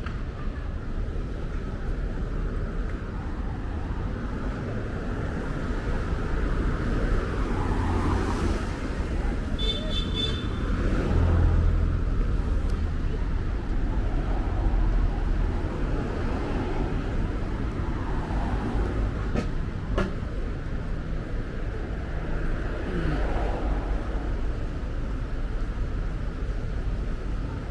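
City street traffic: a steady rumble of car and bus engines and tyres, swelling as vehicles pass, loudest about eleven seconds in. A brief high-pitched sound comes about ten seconds in, and a single click near the end.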